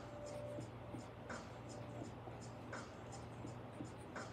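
Oil-paint brush scrubbing on stretched canvas in short, repeated scratchy strokes, about three a second, as sky clouds are blended. A steady low hum runs underneath.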